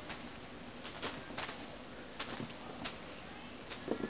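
Light, irregular taps and rustles of kittens playing with a feather toy on a string, over a steady background hiss.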